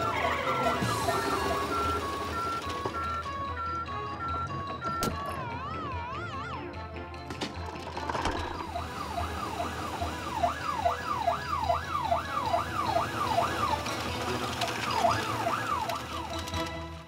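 Cartoon police siren over background music: a two-tone high-low siren for the first few seconds, a brief warbling tone about five seconds in, then a fast falling siren sweep repeating about twice a second from about eight seconds in.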